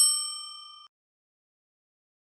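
A single bright, bell-like ding sound effect, struck once and ringing down, cut off abruptly just under a second in.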